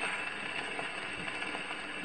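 Steady surface hiss and crackle of a shellac 78 rpm record, the needle running in the lead-in groove before the music.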